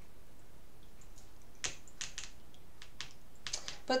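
A scatter of light clicks and taps from hands handling small objects at a table. They come in two loose clusters, one about halfway through and one just before the end.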